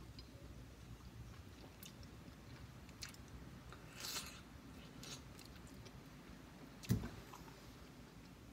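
Faint biting and chewing of a juicy slice of fresh pineapple, with small crunchy clicks. A single thump about seven seconds in is the loudest sound.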